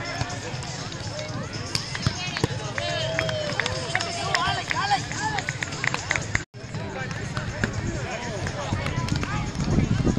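Outdoor chatter and calls from many people across busy beach volleyball courts, with scattered sharp slaps and knocks. The sound cuts out briefly about six and a half seconds in.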